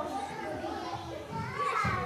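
Indistinct chatter of many young children talking over one another, mixed with murmured adult voices.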